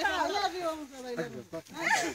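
A high-pitched voice trailing off in drawn-out notes, then a short questioning "Eh?" near the end.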